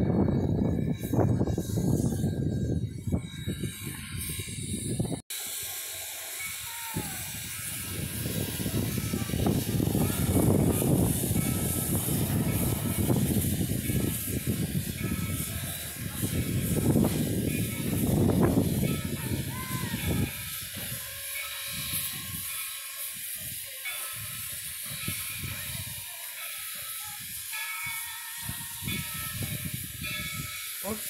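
Steam locomotive standing with steam hissing steadily, under swells of low rumble. The sound drops out briefly about five seconds in.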